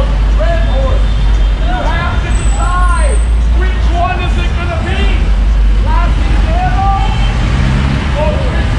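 A man preaching in a loud, shouted voice, over a steady low rumble of traffic and street noise.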